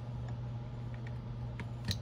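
A few faint ticks and one sharper click near the end as an iPhone 14 Pro is handled and its loosened screen opened, over a steady low hum.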